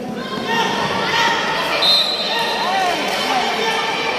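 Players and spectators shouting during a kho-kho game, with running feet on the court, echoing in a large indoor sports hall. A short high tone sounds about two seconds in.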